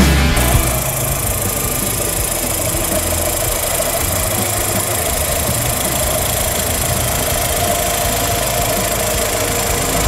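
Volkswagen Saveiro's four-cylinder engine idling steadily, heard close up in the open engine bay. A short tail of rock music cuts off just at the start.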